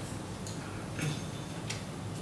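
Paper sticky notes being handled on a flip chart pad: three short, crisp clicks as notes are peeled off and pressed onto the paper, over a steady low room hum.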